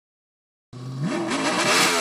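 A car engine revving: after a moment of silence it comes in at a steady low pitch, then climbs and wavers up and down with the throttle.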